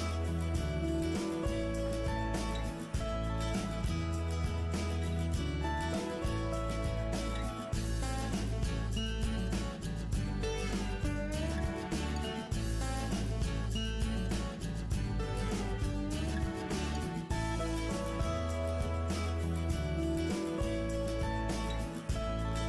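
Instrumental background music, steady and even in level throughout.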